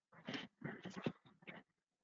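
Faint calls of a domestic animal: a run of several short calls that stops shortly before the end.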